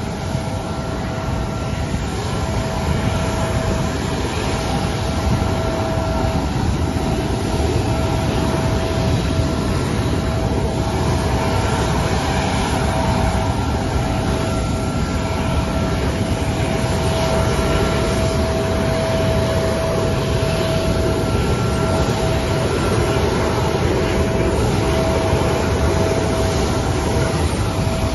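Jet aircraft running steadily: a constant rushing noise with a steady high whine. It grows slightly louder over the first several seconds.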